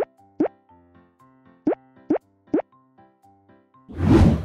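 Light children's background music with five short rising 'bloop' sound effects: two close together at the start and three in quick succession about a second and a half later.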